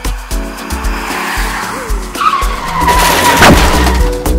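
Car tyres screeching in a hard skid, with a high steady squeal from about two seconds in and a single sharp bang about three and a half seconds in. A music beat continues underneath.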